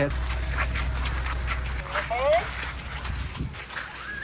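A horse walking at a slow pace on a wet gravel path, its hooves making scattered soft clicks. A short rising call cuts in just after two seconds.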